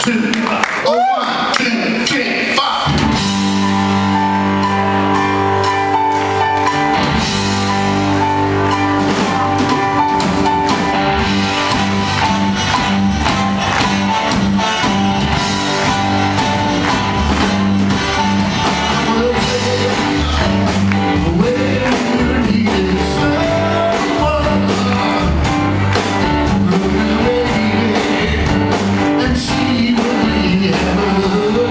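Live rock band starting a song: after a short ragged moment the band comes in about three seconds in with guitar and bass chords, and the drums and low end fill out about seven seconds in, playing on steadily.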